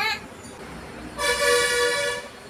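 A vehicle horn sounding once, starting a little over a second in: a single steady, flat-pitched honk lasting under a second.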